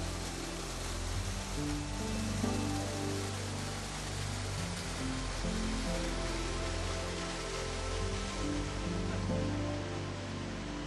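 Soft background music of slow, held notes over the steady rush of a small waterfall and mountain stream.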